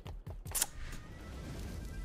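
Online slot game audio: a few short clicks in the first half second as the spinning reels come to a stop, over faint game music.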